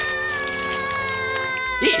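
A cartoon boy's voice holding one long, high-pitched yell that sinks slightly in pitch and breaks off near the end.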